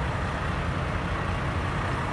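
Steady low rumble of an idling semi truck's diesel engine.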